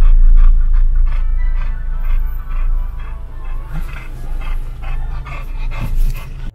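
A chow chow panting, over background music and the steady low rumble of the car.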